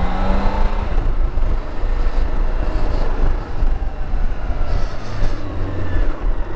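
BMW K1600GTL's inline-six engine pulling with a rising pitch for about the first second, then mostly rushing wind and road noise over a low engine hum as the bike rides on.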